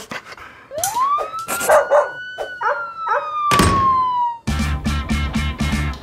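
A dog howling: one long drawn-out note that rises quickly, holds high, then slowly sinks, with a few short yelps or knocks in the middle. Music with a steady beat comes in near the end.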